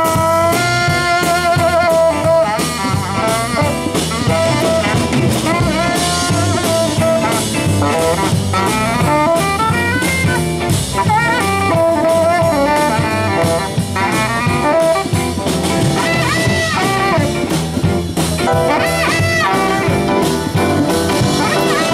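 Tenor saxophone solo in a live rock and roll band, backed by electric guitar and drums. It opens on a long held note with vibrato, then moves into quicker runs and bent notes.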